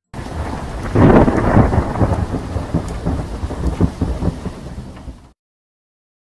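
Thunder sound effect: a sharp crack about a second in, then rolling rumble with crackles over a rain-like hiss, cut off abruptly about five seconds in.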